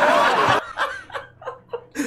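A man laughing hard in a run of short, breathy bursts that grow fainter toward the end.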